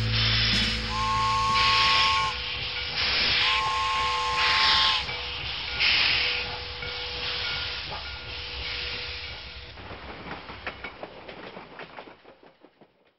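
Steam locomotive: bursts of hissing steam, with a two-note whistle blown twice, about a second in and again around three and a half seconds. The steam sound then fades away.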